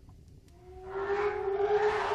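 Horror-trailer sound-design drone: a faint low rumble, then about half a second in a held tone enters, gliding slightly upward, and swells with a rising hiss until it is loud.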